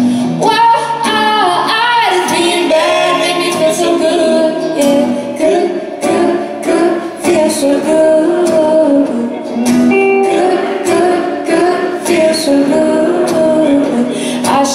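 Live acoustic song: a woman sings the lead over a strummed acoustic guitar and a hollow-body electric guitar.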